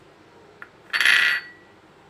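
A metal utensil or cup knocks against a stainless steel mixing bowl, once faintly about half a second in and then louder about a second in, leaving a brief metallic ring.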